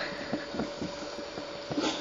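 Fingers handling a small plastic action figure: a few soft, faint clicks over steady background hiss and a faint hum, with a breath near the end.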